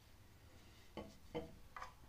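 A steel chisel and a whetstone handled and set down on a wooden workbench: three light knocks, the first about a second in and the last near the end, over faint room tone.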